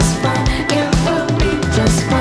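Live rock band playing: drum kit, electric guitars, bass and keyboards, with a steady drum beat.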